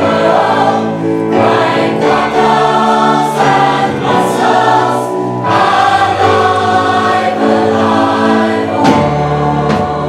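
Large mixed choir of women's and men's voices singing in harmony, holding long chords that shift every second or two, with a sharp attack just before the end.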